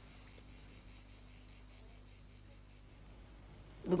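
Faint chirring of insects in a fast, even pulsing rhythm, over a faint steady low hum.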